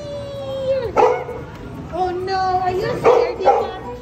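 Dogs howling in long, wavering notes, at times two voices at once, with a sharp bark about a second in and two more about three seconds in.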